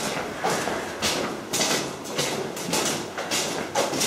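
Shuffling footsteps of a group of recruits walking round in a circle on a hard floor, a scuffing rhythm of about two steps a second.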